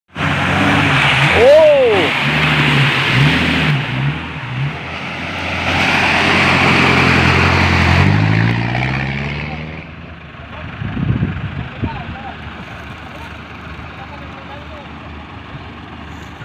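Off-road 4x4 engine revving hard as it churns through deep mud, its pitch rising and falling, with a sharp climb in revs about eight seconds in. After about ten seconds the engine falls much quieter.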